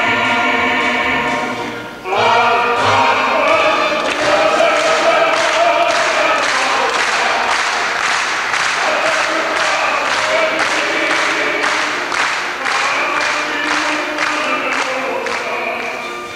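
Mixed folk choir singing. From about four seconds in, the audience claps along in time at about two claps a second over the singing.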